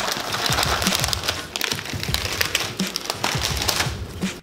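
Plastic Oreo cookie wrapper crinkling as it is pulled open and handled: a dense, continuous crackle of fine clicks.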